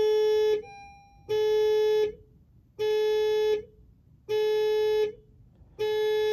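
2022 Honda HR-V's dashboard warning chime sounding repeatedly with the ignition switched on: a single pitched tone of just under a second, with a short fading tail, repeating about every one and a half seconds, five times.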